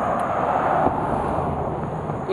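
A car driving past close by: a steady rush of tyre and engine noise.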